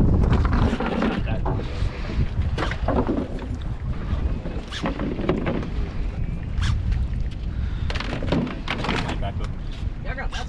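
Outdoor rumble, like wind buffeting the microphone, runs throughout, with indistinct voices and scattered short knocks.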